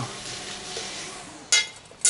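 Mouth sounds of tasting sauce off a metal spoon: faint lip and mouth noise, then a short, sharp hiss about one and a half seconds in.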